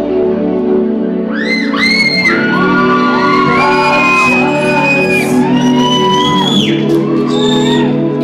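Live band playing, with electric guitar and a male lead vocal, in a large hall. From about a second and a half in, a fan close to the recording device sings along loudly in a high voice, with rising whoops.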